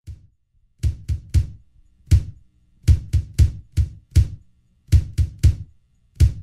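A hip-hop drum beat starts the next song: kick and snare hits in a repeating pattern with a low bass line under them, starting about a second in.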